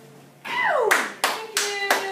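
Audience applause starting as the band's final chord dies away: a cheer that falls in pitch, then separate hand claps about three a second.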